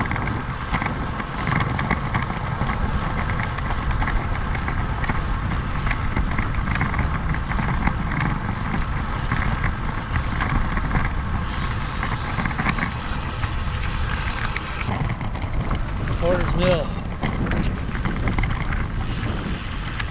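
Steady wind noise on a bike-mounted action camera's microphone while a road bike is ridden along an asphalt road, with low rumbling road noise underneath.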